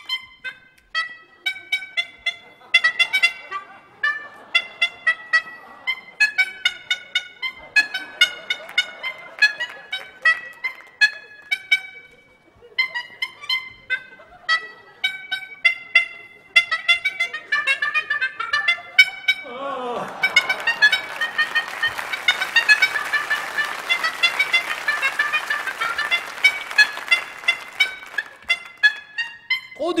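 Klaxophone: a suit of hand-squeezed bulb horns, each tuned to a note, honked one after another to play a classical medley as a quick tune of short, bright honks. About two-thirds of the way in, a steady wash of noise joins the honking and lasts until near the end.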